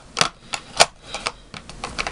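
A quick series of small clicks and taps from plastic makeup compacts and cases being handled, closed and set down, the loudest a little under a second in.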